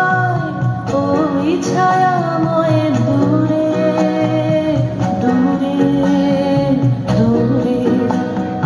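A song with a woman singing long, held notes that glide between pitches, over steady instrumental accompaniment.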